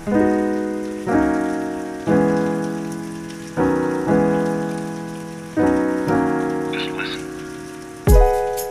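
Mellow keyboard chords in a drum-free break of a lo-fi hip-hop track: each chord is struck about once a second and rings out, over a steady layer of rain sound.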